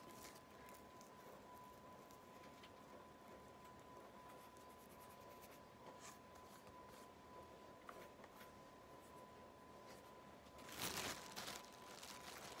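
Near silence with faint rustling and ticking of dry cannabis being broken apart by hand on a DVD case, then a crinkling plastic bag for about a second near the end.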